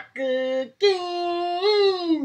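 A woman singing two held notes: a short lower one, then a longer higher one that lifts slightly near the end.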